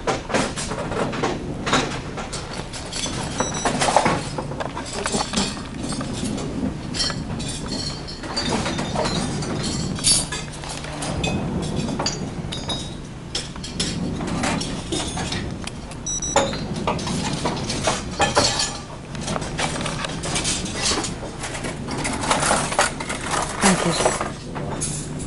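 Indistinct voices with scattered clinks of cutlery and dishes in a restaurant, over a steady low hum.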